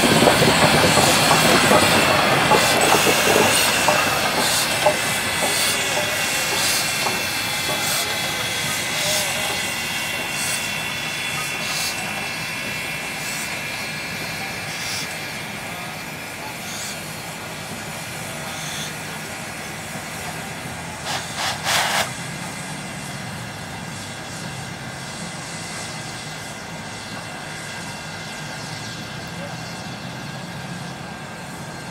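Ja-class steam locomotive 1275 rolling slowly past, with the clatter of its wheels and running gear and a hiss of steam, fading as it moves away. Thin squealing tones sound in the first half, and a brief cluster of sharp bursts comes about two-thirds of the way through.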